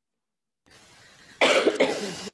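A woman coughing twice in quick succession, starting about a second and a half in.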